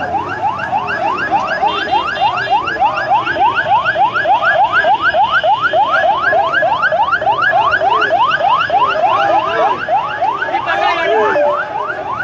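Electronic siren yelping in fast rising sweeps, about three a second, repeating steadily, becoming tangled briefly near the end.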